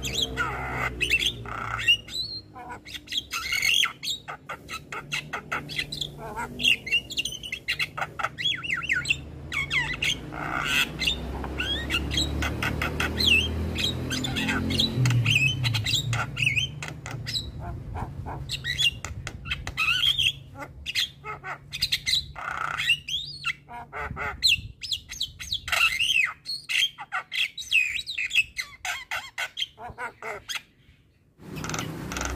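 Javan myna (jalak kebo) singing a long, busy run of squawks, chatters and short whistled notes, with only brief pauses.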